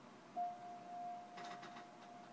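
A single high note held on an electronic keyboard: a pure, steady tone that starts about a third of a second in and slowly fades. A few faint clicks come about a second and a half in.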